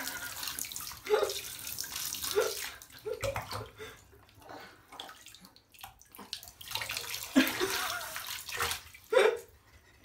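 Water running and splashing in a bathtub, in two stretches with a quieter gap in the middle. Several short, high vocal sounds from a baby come through it.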